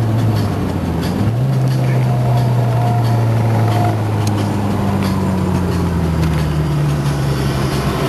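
Car engine running at steady, moderate revs. Its note steps up slightly about a second in, then slowly sinks as the car eases off.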